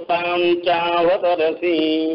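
A man chanting Sanskrit verses in a melodic recitation, holding long, steady notes with small glides between them.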